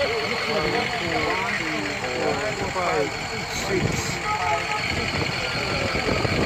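Several people talking over one another, with a vehicle engine idling steadily underneath.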